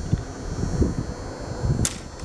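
Wind buffeting the microphone as a laminated hickory-and-bamboo bow with composite plastic blades is drawn, with one sharp, high click near the end. The bow clicks on the draw as the string and blades knock against the wood.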